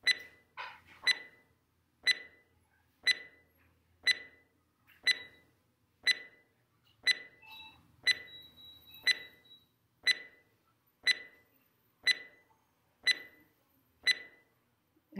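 Short, sharp electronic beeps, one each second, pacing the count of a breathing exercise: eight counts to breathe in, eight to breathe out.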